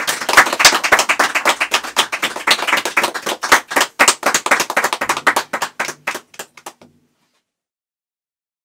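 Audience applauding, a dense patter of hand claps that thins out and stops about seven seconds in.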